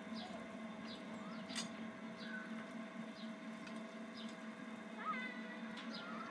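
Chain swing carousel running with a steady hum, and short high squeaks now and then, with a cluster of them about five seconds in.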